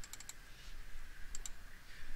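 Computer mouse button clicks: a quick run of three or four clicks at the start, then a double-click about a second and a half in.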